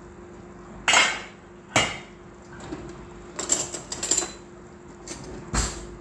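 Kitchenware being handled: a series of sharp knocks and clinks of dishes, one about a second in, another near two seconds, a quick cluster around three and a half to four seconds and two more near the end, over a steady low hum.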